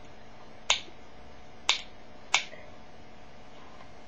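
Three sharp clicks from the twist dial at the base of a Sure Maximum Protection cream antiperspirant, turned to push the cream up through the holes in its top.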